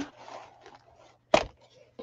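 Paper and cardstock pieces of a handmade journal being handled and shuffled, with faint crackling, and one sharp tap a little past halfway.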